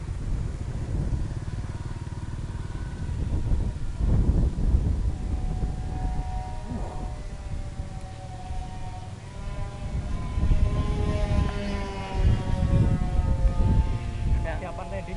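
Twin brushless motors and three-blade propellers of a radio-controlled ATR 72-600 model plane flying overhead: a whine of several steady tones that comes in about five seconds in and grows louder toward the end, its pitch drifting slightly. A heavy, gusty low rumble of wind on the microphone runs under it and is the loudest sound.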